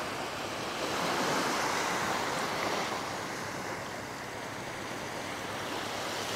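Small waves washing onto a sandy beach, a steady surf wash that swells and eases slightly.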